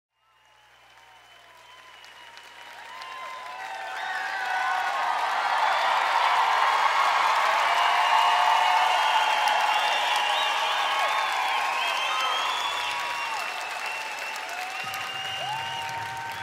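Concert audience applauding and cheering, with scattered calls rising above the clapping. The sound fades in over the first few seconds and then holds steady, easing off slightly near the end.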